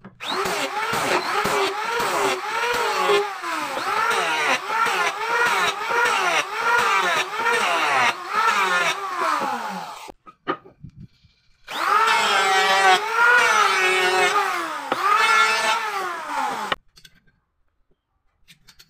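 Corded electric hand planer running, its motor pitch dipping and recovering with each quick pass over a small board. It runs in two stretches, about ten seconds and then about five, with a short stop between.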